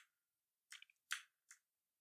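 Near silence broken by a few faint, short clicks over about a second, starting just before the middle.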